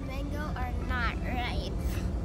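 A steady low rumble of a car ferry under way, with a child's voice speaking over it for most of the two seconds.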